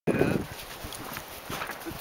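A short loud vocal sound at the very start, then soft, scattered crunches of small dogs' paws bounding through deep snow.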